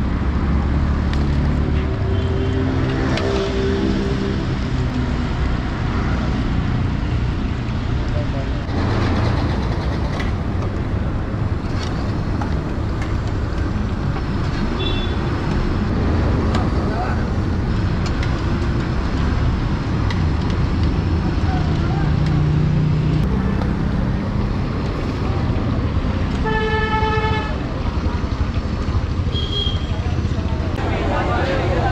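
Busy street traffic: a steady rumble of engines. A vehicle horn sounds briefly once near the end.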